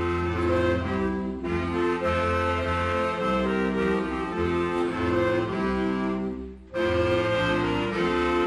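Clarinet ensemble with double bass playing a slow instrumental piece in sustained chords. The phrases break briefly about a second and a half in, and again just before seven seconds.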